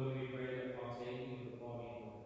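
A priest chanting a Mass prayer on a near-steady reciting pitch.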